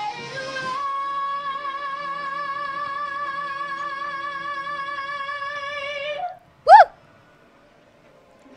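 A singer belting one long high note with steady vibrato for about five seconds, played back from the audition clip. Just after the note ends, a brief, very loud whooping cry rises and falls.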